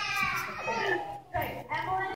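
Young children's voices chattering and calling out.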